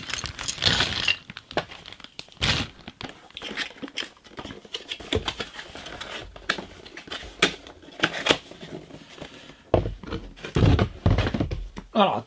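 A cardboard toy box and its inner trays being handled: irregular rustling, scraping and light knocks of cardboard, with a few heavier thumps near the end.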